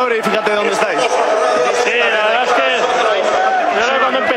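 Mostly speech: men's voices talking over arena crowd noise.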